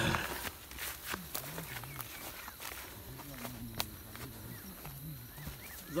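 Footsteps through dry grass and scrub, with frequent sharp clicks and crackles of stems and twigs underfoot. Low, indistinct vocal sounds waver in the background through most of it.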